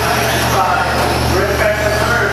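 Electric motors of radio-controlled short course trucks whining as they race, the pitch rising and falling with throttle, over a steady low hum.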